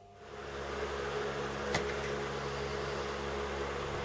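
A steady rushing noise with a low hum fades in about a quarter second in and holds, with one faint click just under halfway through.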